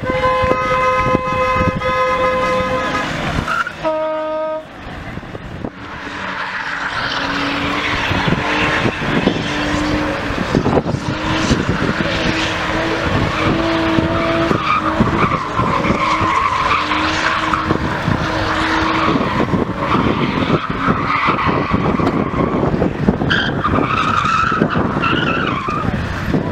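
Car engine held at high revs while the tyres skid and squeal through a drift and a smoky burnout on concrete. A steady high-revving engine note comes first, and thick tyre noise sets in from about six seconds in and carries on.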